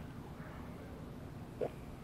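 A single short gulp as a mouthful of beer is swallowed, about one and a half seconds in, over a low steady background hiss.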